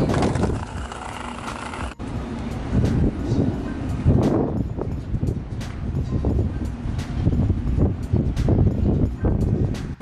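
Outdoor street noise dominated by a low rumble of wind buffeting the camera microphone, with faint ticks in the second half.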